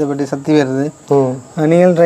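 A man talking, with a faint steady high-pitched tone underneath.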